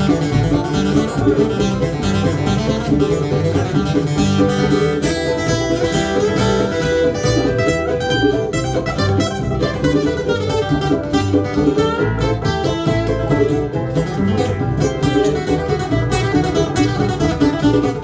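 Bluegrass band playing an instrumental break, with banjo, mandolin and acoustic guitar picking over upright bass and fiddle.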